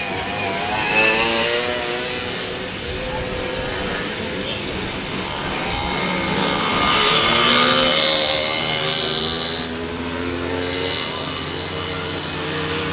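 Small racing motorcycles running round a grass track, their engines revving up and down in pitch. They are loudest about seven to eight seconds in, as riders pass close.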